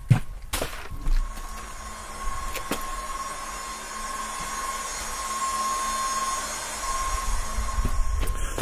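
Zero electric motorcycle charging: a steady high-pitched whine over an even fan-like rush and low hum, with a few knocks and clicks in the first couple of seconds.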